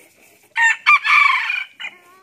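F2 red junglefowl rooster crowing once: a short crow that starts about half a second in, runs about a second and breaks off sharply, with a brief extra note just after.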